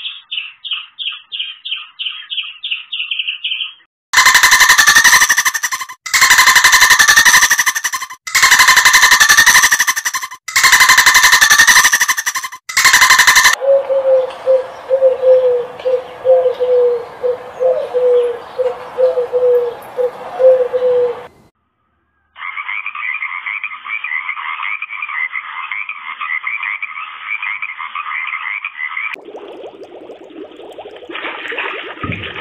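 A run of separate animal calls. First a squirrel chatters in fast, high chirps, then come five loud, harsh calls of about two seconds each. After that a pigeon gives short low notes about two a second over a hiss, and near the end there is fast, high chirping.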